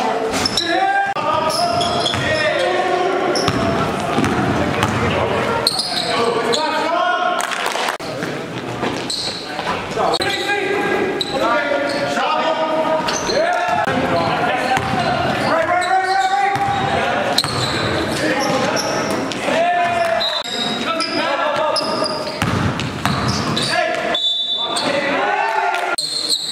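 Men's voices calling out in a gymnasium, with a basketball bouncing on the court floor.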